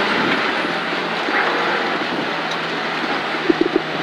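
Rally Mini Cooper's engine and road and tyre noise heard from inside the stripped cabin, running at steady, easing revs as the car rolls through the stage finish.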